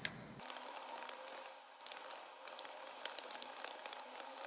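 Typing on a computer keyboard: a quick, irregular run of quiet key clicks as a sentence is typed.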